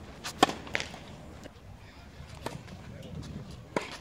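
Tennis ball struck by rackets: a sharp hit of a serve about half a second in, a fainter hit about two and a half seconds in, and another sharp hit near the end.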